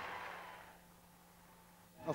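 Audience applause dying away over the first second, leaving near silence with a faint steady low hum.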